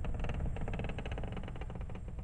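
Horror sound effect: a low rumble under a fast, dense clicking rattle that holds steady.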